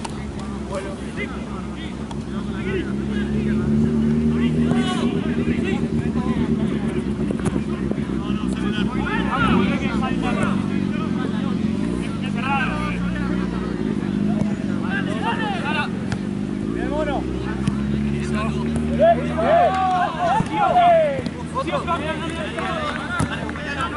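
Low engine drone of motor traffic passing near the pitch, swelling and fading twice, under scattered shouts from the players.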